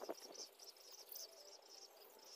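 Faint chirping of a cricket: a steady rhythm of short, high chirps, a few per second. There is a soft tap at the very start.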